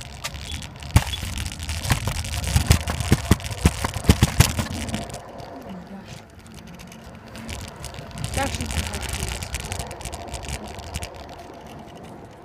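Rolling and rattling movement noise with a quick run of sharp clicks and knocks in the first few seconds. It quietens after about five seconds and picks up again around eight seconds, typical of a kick scooter being ridden or carried over pavement while a handheld phone records.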